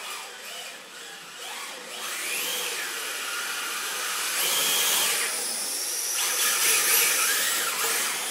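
1/10-scale electric RC drift cars running on polished concrete: the motors whine, rising and falling in pitch several times with the throttle, over a steady hiss of the drift tyres sliding. It grows louder over the second half as the cars come nearer.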